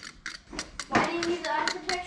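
Metal stirrer clicking and scraping against the inside of a metal can as thick tank sealer is stirred slowly, with a run of light clicks in the first second.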